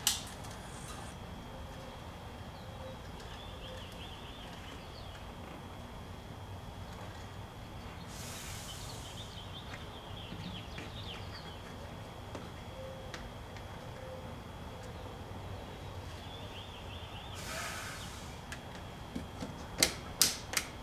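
Quiet outdoor background with a thin steady high whine and faint bird chirps, broken by two brief bursts of hiss, about eight and seventeen seconds in.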